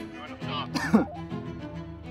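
Background music with sustained string tones. Just under a second in, a person makes a short vocal sound that falls in pitch, like a throat clear.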